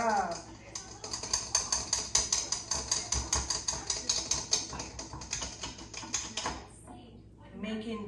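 Rapid, regular scraping and clicking of a utensil stirring in a stainless steel mixing bowl, several strokes a second, stopping shortly before the end.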